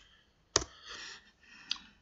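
Two sharp clicks about a second apart, the first louder, from the computer controls as the presentation slide is advanced. A faint soft noise falls between them.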